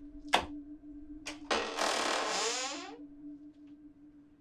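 A steady synthesizer drone of a horror soundtrack. A sharp hit comes about a third of a second in and a short click follows about a second later. A loud hissing swell with a sweeping, phaser-like sound then rises and fades over about a second and a half.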